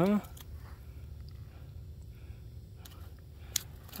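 A bluegill is set down on the ice with one sharp tap about three and a half seconds in, over a low steady rumble and a few faint handling ticks.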